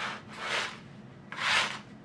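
Metal bench scraper scraping flour and sugar across a mat to mix them, two swishing strokes about a second apart.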